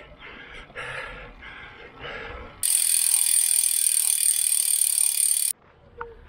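Road bike's rear freehub ratchet buzzing steadily while the wheel coasts. It starts suddenly after a couple of seconds of fainter riding noise, runs loud for about three seconds, and cuts off suddenly.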